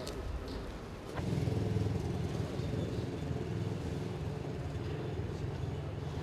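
A motor vehicle's engine running nearby: a steady low rumble that starts suddenly about a second in, over the background noise of a crowded street.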